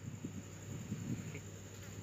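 Faint rustling of fabric and small handling sounds as a metal zipper slider is fitted onto a bag's zipper chain by hand, over a steady low hum.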